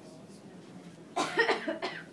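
A person coughing: a short run of quick coughs starting a little over a second in.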